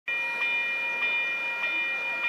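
Railway level crossing warning bell ringing, struck about every 0.6 seconds with a steady ringing tone between strikes, sounding while the crossing's lights flash and the barrier is down for an approaching train.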